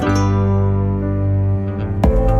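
Background music: a guitar chord held and ringing on with the beat paused, the beat coming back at the very end.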